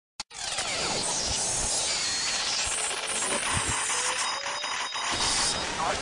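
Opening of a wrestling entrance theme: a dense layer of noisy, whooshing electronic sound effects with a few low thuds and a rising whistle near the end.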